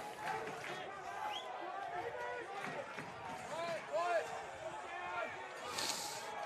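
Faint, scattered voices of players and spectators calling out across an open rugby ground, with a brief hiss just before the end.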